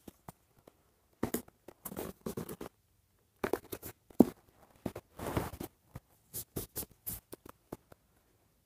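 Irregular rustling, scraping and clicking of a doll's cardboard box with a plastic window being worked open by hand, with a sharp click about four seconds in.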